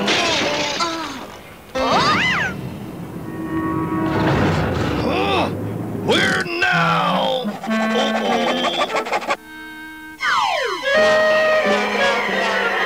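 Cartoon soundtrack: music with comic sound effects and the characters' wordless voice noises. It includes a rising pitch glide about two seconds in and a steep falling glide near the end.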